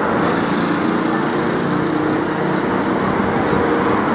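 Road traffic passing close by: car engines humming steadily over tyre noise on the street.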